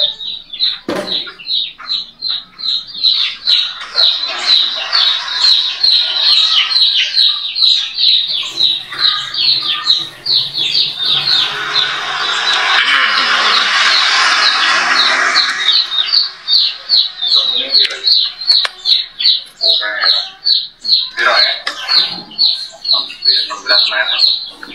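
A bird chirping over and over in a fast, steady series of short high chirps, about three or four a second. In the middle a vehicle passes on the road: a louder rushing noise with a low hum swells for several seconds and fades.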